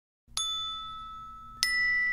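Two struck bell-like chime notes of an intro jingle, each ringing on and slowly fading: the first about a third of a second in, the second, higher and louder, near the end. A faint steady low hum lies underneath.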